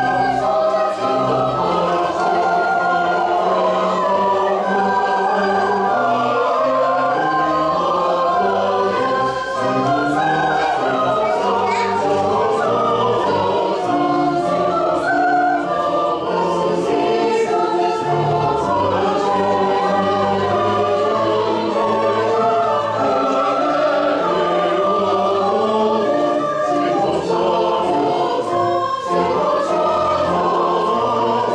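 Church choir of mixed voices singing an anthem, with sustained notes in several parts.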